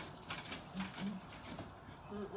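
A person's short hummed 'mm-hmm', two brief low tones a little under a second in, over faint irregular ticking and rustling.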